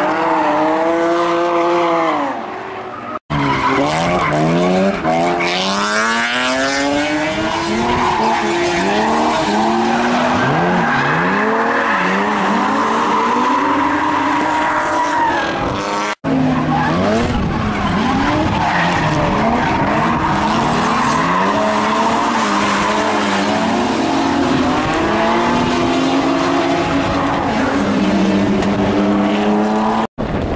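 A drift car's engine revving hard, its pitch swinging up and down as the throttle is worked, while the rear tyres squeal and scrub through a sideways slide. The sound breaks off abruptly twice and picks up again.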